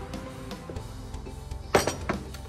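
Background music, and near the end a single sharp knock: a marble rolling pin being set down on a hard surface.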